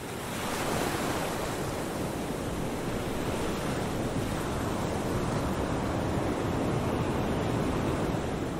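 Ocean surf breaking and washing onto a beach: a steady rush of waves that swells up during the first second.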